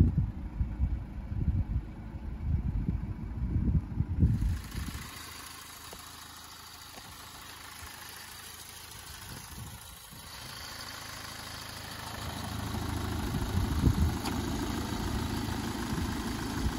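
Ford Mondeo Mk4's 2.0 TDCi four-cylinder turbodiesel idling, growing louder over the last few seconds as the open engine bay comes near. Wind buffets the microphone in the first four seconds.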